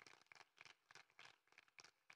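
Near silence, with faint, scattered clicks.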